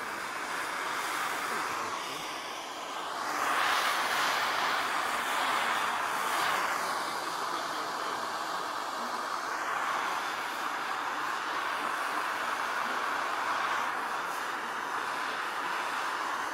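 Gas torch flame burning with a steady hiss while it heats lead body solder on a steel door bottom to soften it for paddling. It gets louder about three and a half seconds in and then holds steady.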